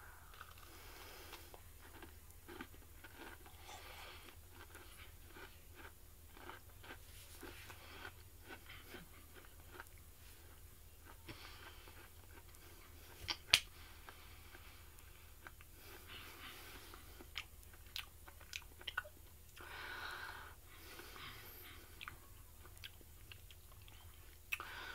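A person biting into and chewing a crunchy, chewy snickerdoodle sugar cookie close to the microphone: faint mouth clicks and crunches throughout, with one louder click about halfway through.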